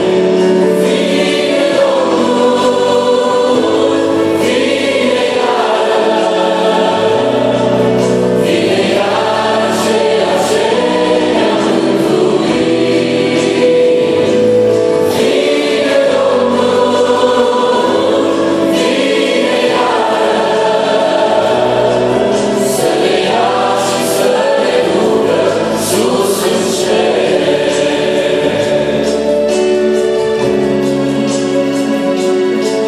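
A mixed group of men's and women's voices singing a gospel hymn in harmony through microphones, over sustained instrumental accompaniment.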